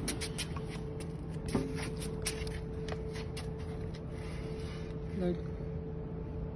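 Large ceramic tiles knocking and clacking against each other as one slab is pulled forward from an upright stack: a run of short, sharp knocks that thins out after about three seconds, over a steady low hum.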